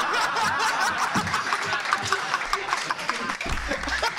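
A theatre audience laughing at a joke, with scattered clapping running through the laughter.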